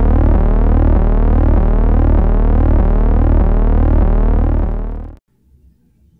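Electric buzzing sound effect: a loud, steady synthetic drone with a deep pulsing hum and sweeping overtones, fading and cutting off about five seconds in.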